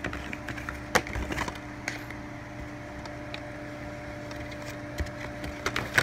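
Plastic DVD case being handled, with a few scattered sharp clicks and knocks and some quieter rubbing, over a steady low hum.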